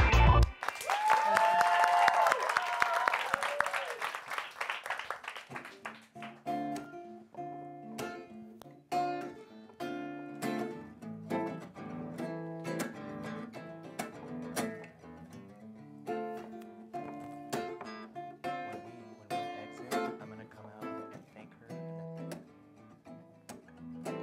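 Brief audience cheering and clapping, then a solo acoustic guitar starts an instrumental intro from about six seconds in: single plucked notes and chords at a slow, even pace.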